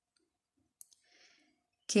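Near silence in a pause between sentences, with a single soft mouth click a little under a second in and a faint breath. Then a woman starts speaking just before the end.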